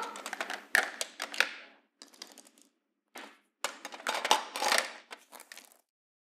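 Plastic toy tea set clinking and clattering: irregular runs of light clicks, some clusters close together, stopping shortly before the end.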